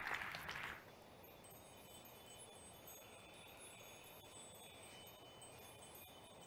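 Audience applause dying away within the first second, followed by faint, high tinkling chime tones.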